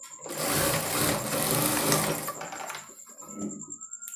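Industrial straight-stitch sewing machine running fast as it stitches thread piping onto a blouse neckline. It runs for about two seconds, then slows and stops about three seconds in.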